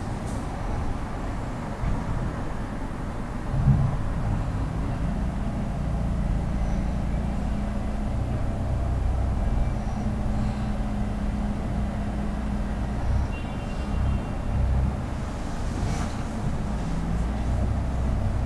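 Low, continuous rumble of vehicle traffic with a shifting hum, and a brief thump about four seconds in.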